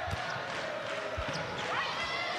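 Volleyball being played in an indoor arena: a steady murmur of spectators, with a few dull thuds of the ball being served and played, one about a second in.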